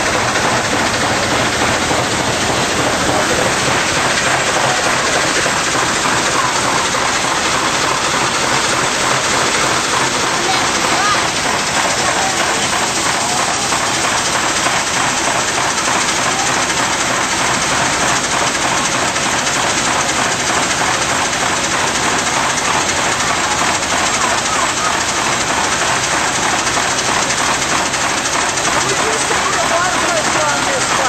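1904 American Extra First Class steam fire engine pumping, a steady rushing hiss of steam and of water driven through its hose stream.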